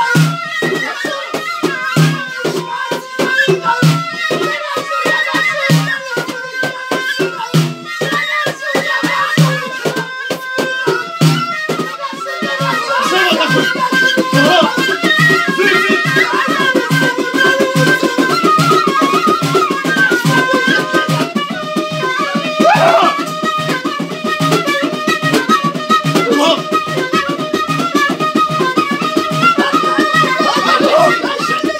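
Traditional music of frame drums and a wind pipe: the drums beat a steady rhythm under a high, wavering pipe melody. About twelve seconds in, the drumming quickens and becomes denser and a little louder.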